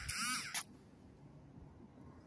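A short, squeaky rubbing creak that breaks off just over half a second in.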